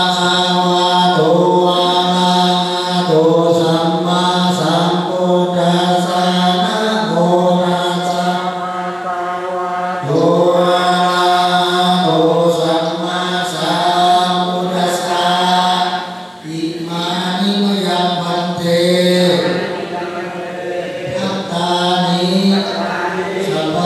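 Buddhist ceremonial chanting, recited almost on a single held pitch, with a brief dip about sixteen seconds in.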